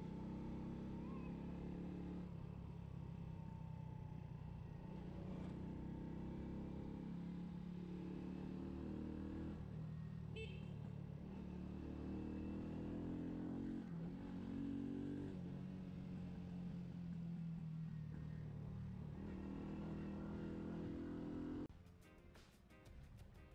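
Small scooter engine running while riding, its note rising and falling with the throttle; it cuts off suddenly just before the end.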